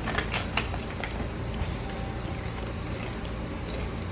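Room background: a steady low hum, with a few light clicks in the first half-second.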